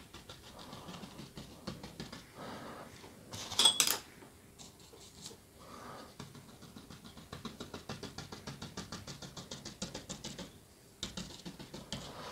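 Fan brush dabbing and flicking thick white oil paint onto a canvas: faint scratchy strokes, then a run of quick light taps, about six a second, in the second half. A short breathy hiss comes about three and a half seconds in.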